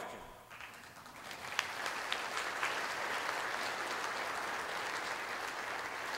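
Audience applauding, building up over the first second or two and then holding steady.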